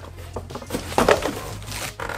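Cardboard being handled: a few scrapes and knocks as a packing piece is lifted out and the carton pushed aside, over soft background music.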